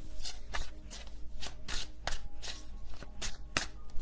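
A deck of tarot cards being shuffled by hand: a quick, irregular run of short papery snaps and slaps.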